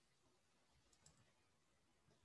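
Near silence: room tone, with a couple of faint brief clicks about a second in.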